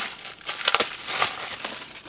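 Plastic mailing bag crinkling as hands handle and open it, in a series of irregular crackles.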